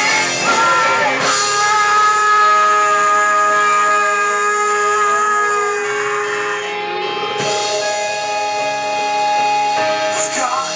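Live rock band playing electric guitars, keyboard, bass and drums. After about a second the band settles into long, sustained chords that ring on.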